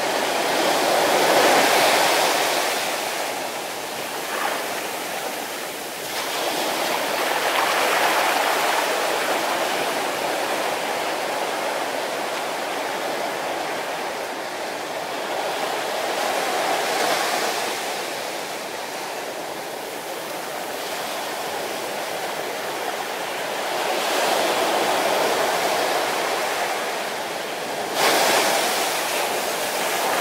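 Small ocean waves breaking close by on a sandy beach, foam hissing as the water washes up and drains back over the sand. The surf swells and eases every six to nine seconds, with a sharper surge near the end.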